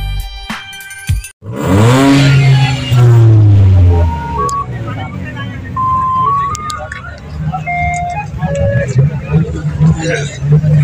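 Background music cuts off, then a car engine revs loudly about a second and a half in, rising and then holding for a couple of seconds. A string of short beeping tones stepping up in pitch follows, with voices in the background.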